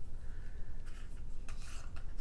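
Hands unwrapping a small gift parcel: the wrapping rustles and crinkles, with a few short crackles.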